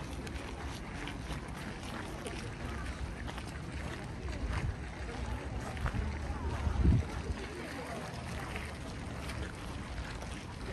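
Outdoor ambience with a steady low wind rumble on the microphone and faint voices of people in the distance. A louder low bump comes about seven seconds in.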